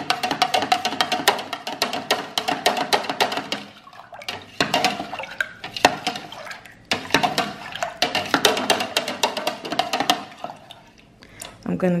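A metal spoon stirring a pitcher of home-made soursop drink, clinking rapidly against the plastic sides. The clinking comes in three stretches, with short pauses about four and seven seconds in.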